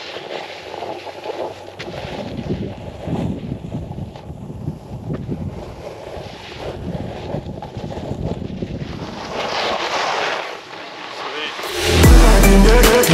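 Wind rushing over the microphone while riding a snowboard, with the board scraping and sliding over packed snow. A louder hiss of snow comes about nine seconds in.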